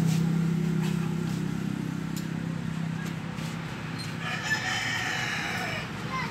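A low, steady engine hum fades away over the first two seconds or so. About four seconds in, a rooster crows once, a long call lasting nearly two seconds.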